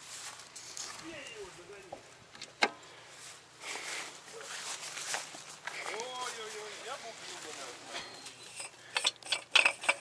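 Footsteps through grass and rustling, handling noise around a parked tractor, with a sharp click about a quarter of the way in and a run of small metallic clicks near the end. Distant, indistinct voices and a faint low hum sit underneath.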